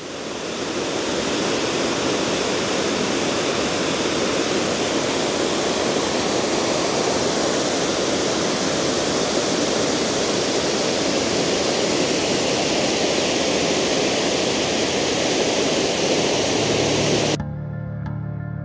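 Cascade Falls rushing, a steady, loud wash of falling water from a waterfall running full. It fades in at the start and cuts off suddenly near the end, where soft music begins.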